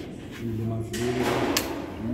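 A man talking in a low voice in a room, with one sharp click about one and a half seconds in.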